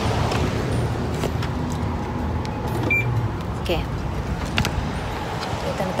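Car being locked by remote: one short high electronic beep about three seconds in, the lock-confirmation signal, over a steady low outdoor rumble of car-park traffic.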